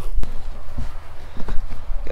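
Wind buffeting the microphone, a steady low rumble, with a few faint short knocks.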